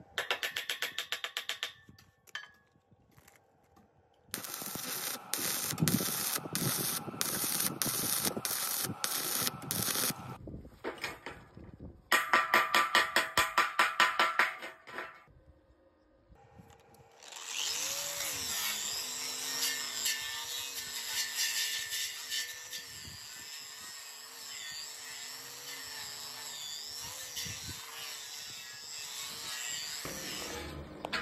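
Metalworking on steel posts: a few hammer strikes at the start, then stretches of regular knocking and fast rattling pulses. From a little past the middle to the end, an angle grinder fitted with a stripping disc runs steadily against a steel tube, taking off rust, with a wavering hum under the grinding noise.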